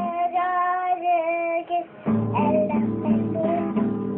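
A young girl strumming an acoustic guitar and singing along without words. For the first half her voice holds one long note while the guitar pauses; the strummed chords come back about two seconds in, with more singing over them.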